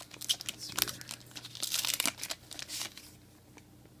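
A stack of glossy Panini Prizm trading cards handled in the hands, cards sliding and flicking against each other in quick crisp rustles and clicks, thinning out in the last second.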